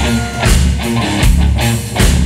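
Live rock band playing: an electric guitar plays a lead line over bass guitar and a drum kit with a steady beat.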